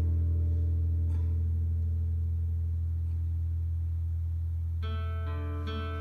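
Live band music: a deep sustained low drone slowly fading, then guitar notes ringing out near the end.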